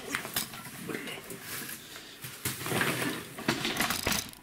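Monofilament gill net rustling while being handled, with its hard round floats clacking and knocking against each other in a run of sharp clicks.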